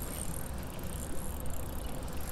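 Steady low wind rumble on the microphone, with no distinct events.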